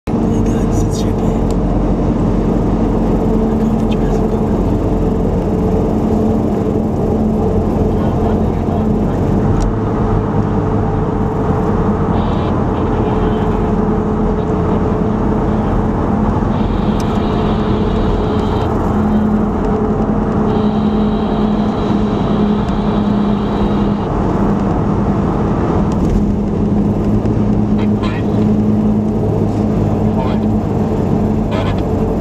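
Cabin noise of a Toyota FJ Cruiser cruising at highway speed: its V6 engine drones steadily under tyre and road noise.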